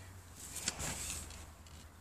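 Soft rustling and handling noise as a phone is moved about close to a tent's fabric and groundsheet, loudest from about half a second to a second in, over a faint low hum.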